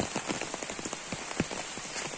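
Heavy rain falling on an umbrella held overhead: a dense patter of many separate drop hits.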